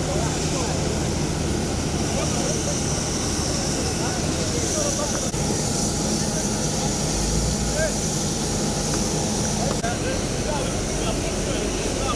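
Steady rumble and high whine of a jet airliner running on the apron, with people's voices chatting and calling over it.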